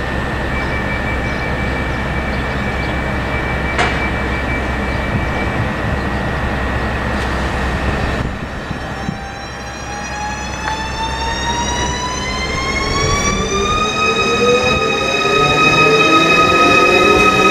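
ZSSK class 671 double-deck electric multiple unit pulling away from a standstill. A steady high tone gives way, from about nine seconds in, to the electric traction whine rising smoothly in pitch as the unit accelerates, then levelling off and growing louder as it draws near.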